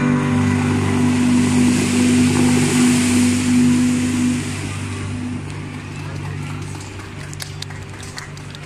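The musical fountain's water jets spraying and falling back with a steady hiss, under the held final chord of the show's music, which fades out about two-thirds of the way through. Crowd voices and a few sharp claps follow near the end.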